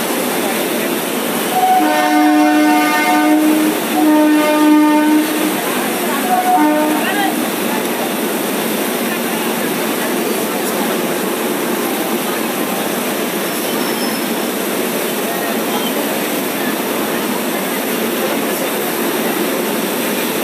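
A train horn sounds in a few blasts starting about two seconds in, with a shorter blast about six seconds in. Passenger coaches roll past at departure speed with a steady rumble and wheel clatter.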